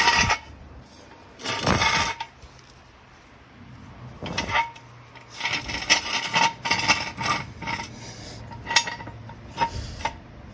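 Steel jack stand being dragged and scraped over a concrete garage floor into place under a car, in a series of short rasping scrapes with metal clinks, and two sharper knocks near the end.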